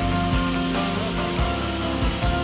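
Live band playing an instrumental passage of a pop song, steady and full, with bass and drum hits under sustained chords.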